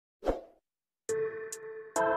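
A short pop sound effect of the subscribe animation, then electronic intro music starts about a second in: a held synth chord over an even ticking beat.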